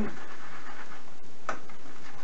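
Badger-hair shaving brush swirled on shave soap in its jar while being loaded, a steady scratchy swishing.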